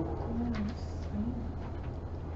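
Two brief low wordless hums of a man's voice, like a hesitant 'mm', over a steady low room hum.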